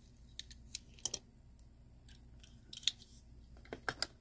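Light, irregular clicks and taps of die-cast toy cars being handled, as a Hot Wheels Ford Bronco is lifted off a display stand, coming in two loose clusters. A low steady hum sits underneath.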